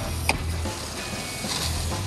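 Waste water from the RV's holding tanks rushing through a flexible sewer hose, under soft background music, with one sharp click about a quarter second in.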